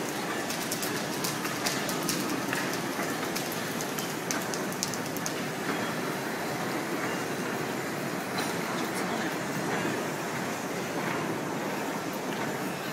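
Large semi-automatic horizontal stator coil winding machine running, its winding tooling turning, with a steady mechanical noise and a run of sharp clicks through the first few seconds.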